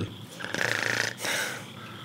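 A person making a mock snore with their voice: one rattling snore about half a second in, followed by a softer breathy exhale.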